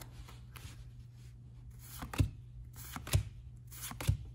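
Trading cards being handled and moved through a stack: faint sliding and light ticks, with two sharper knocks about a second apart, after the first couple of seconds.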